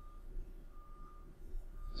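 Faint electronic beeping at one steady high pitch, three short beeps evenly spaced a little under a second apart, over quiet room hum.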